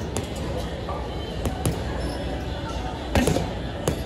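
Boxing gloves striking a hanging teardrop-shaped water heavy bag: sharp thuds, mostly in quick pairs, a second or more apart.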